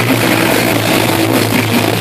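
Punk band playing live and loud: heavily distorted electric guitar and bass holding one low droning note over a wash of drums and cymbals.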